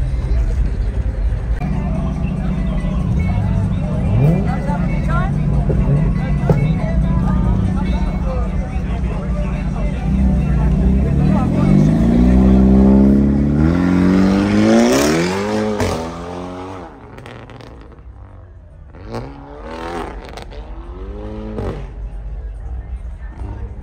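Hyundai Elantra N's turbocharged 2.0-litre four-cylinder running under throttle, then revving up in one long climbing pull that cuts off sharply about three-quarters of the way through. After that it is quieter, with voices around.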